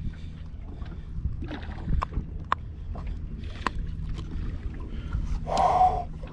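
Steady low rumble of wind and water around a boat, with a few sharp clicks and knocks from handling the fish on the deck and a louder rushing burst near the end.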